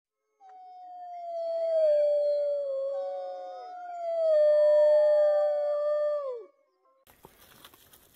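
A chorus of wolves howling: two long low howls, each sliding slowly down in pitch, with higher howls overlapping above them. The howling ends about six and a half seconds in.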